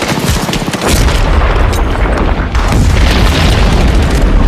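Battle sound effects: rapid gunfire over a heavy, continuous rumble of explosions that swells about a second in.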